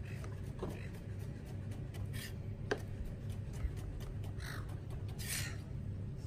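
Several short, harsh bird calls, some seconds apart, over the dicing of tomato with a chef's knife on a cutting board; the blade knocks sharply on the board once, near the middle.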